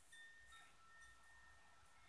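Near silence, with a few faint high ringing tones that hold steady for a second or two, like chimes.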